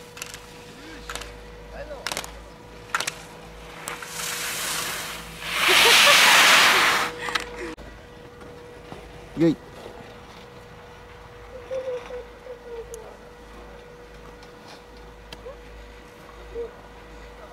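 Skis hissing across the snow as a skier passes close. The hiss builds for a second or so and is loudest for about two seconds in the middle, then drops away suddenly. A few light clicks come in the first three seconds.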